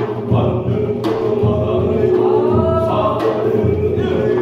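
Korean binari, a chanted ritual blessing: a voice singing long, gliding phrases over steady beats of buk barrel drums, with one sharp strike about a second in.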